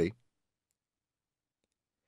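A narrator's voice trails off at the very start, then dead silence: a pause in the reading with no background sound.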